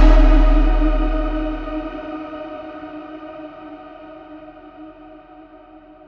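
Final sustained chord of a drum and bass track ringing out and fading away, its treble dulling as it dies. A deep sub-bass note under it fades out within the first two seconds.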